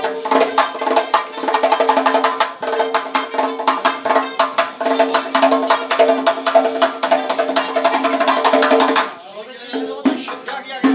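Live Central Asian folk music: a doira frame drum beaten in a fast, dense rhythm with the jingle of its rings, over a plucked long-necked lute and held sung notes. The music breaks off about nine seconds in.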